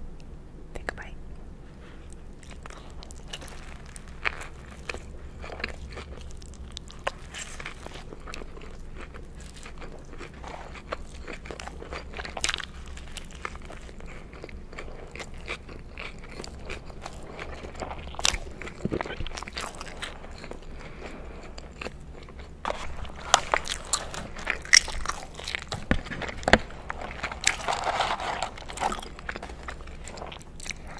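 Close-miked eating sounds of biting into and chewing a McDonald's bacon Quarter Pounder: soft bun, crisp lettuce and bacon crunching and wet mouth clicks, sparse at first. A denser, louder run of bites and chews comes from a little past two-thirds of the way in until near the end.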